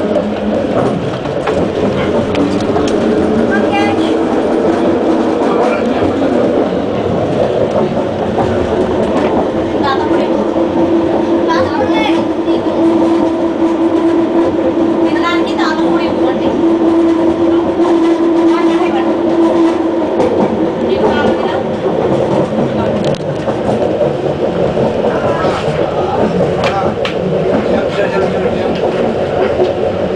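Bombardier Innovia Metro Mark I people-mover car running along an elevated guideway, heard from inside the car as steady rolling and running noise. A steady hum stands out through the middle stretch and fades about two-thirds of the way through.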